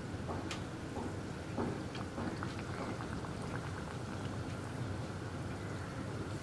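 Vettu cake dough pieces deep-frying in hot oil: a steady sizzle with many small crackles and pops as the oil bubbles around them.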